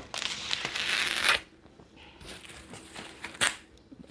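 Black plastic wrapping on a parcel being pulled and torn by hand: a loud crinkling tear for about a second and a half, then quieter rustling with one short crackle near the end.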